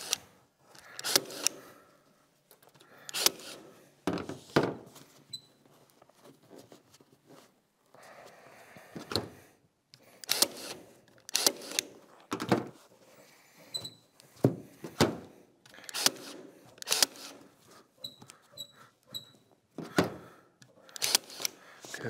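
Battery-powered cordless stapler firing staples through upholstery material into a board, about fifteen sharp shots at irregular intervals of one to two seconds. Quieter handling and rustling of the material comes between the shots.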